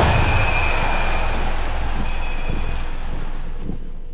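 Low, steady rumble of a cinematic trailer sound effect under the end title, with a faint high tone and a few soft hits, slowly fading out.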